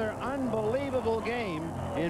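Speech: a television baseball announcer talking, over steady background noise.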